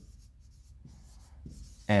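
Marker pen writing on a whiteboard: faint scratching strokes as letters are written.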